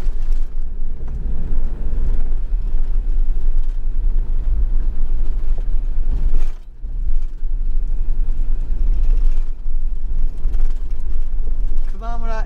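Camping car driving at road speed: a steady low rumble of engine and tyre noise, with a short dip a little past halfway.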